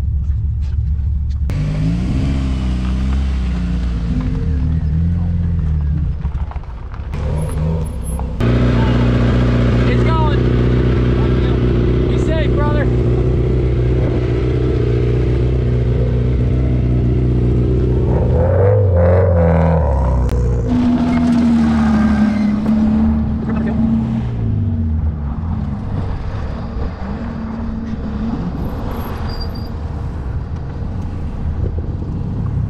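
Competition car engines in a race paddock, idling and revving: the revs rise and fall in the first few seconds, one engine holds a steady higher speed from about eight seconds in, then drops back near the twenty-second mark before another short rev.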